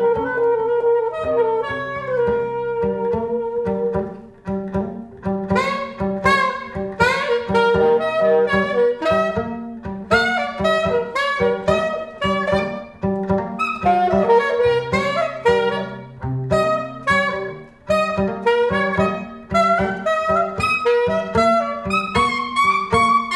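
Free-improvised saxophone and violin duo. The saxophone holds a sustained note for the first few seconds, then breaks into rapid flurries of short notes over a steady pulse of short low notes.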